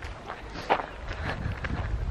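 Footsteps of a person walking along a trail, a few soft steps over a low steady rumble.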